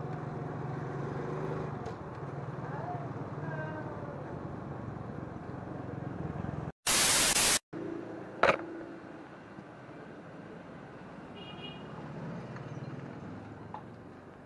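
Small Suzuki motorcycle engine running steadily as it rides slowly along a street. About seven seconds in, the sound cuts to a loud burst of hiss lasting under a second, followed by a sharp click and a much quieter room sound.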